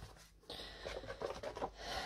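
Cardstock being handled: a faint rubbing and rustling of card, starting about half a second in.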